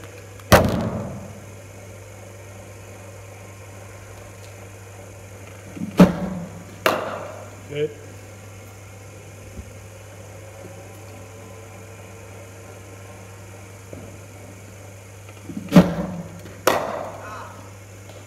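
Cricket bat striking balls fired from a bowling machine: sharp cracks that ring in an indoor net hall, coming in pairs about a second apart, twice, after a single loud knock near the start. A steady low hum runs underneath.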